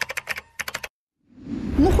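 A quick run of about ten sharp typing clicks, a typing sound effect, that stops just before a second in. A low outdoor rumble then fades in.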